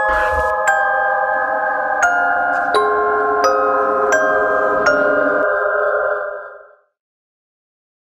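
A slow melody of single bell-like chime notes, struck about every 0.7 s with each note ringing on, with a brief low thud at the start. The chimes die away near the end.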